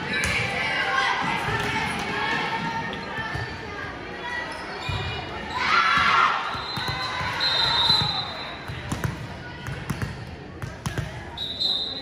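Volleyball being bounced on a hardwood gym floor by a server about to serve, amid spectators' voices and a loud shout about halfway through. A steady whistle tone sounds twice, the second time near the end, the referee's signal to serve.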